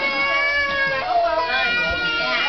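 A crowd of young children's voices chattering and calling out all at once, with several high voices sliding up and down in pitch over one another.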